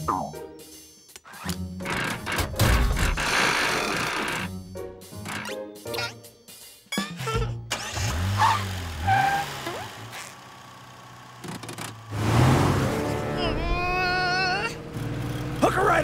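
Cartoon soundtrack of background music with car sound effects: a gear stick being shifted near the start, then a small car's engine revving and driving.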